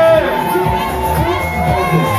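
Party crowd cheering and shouting over dance music.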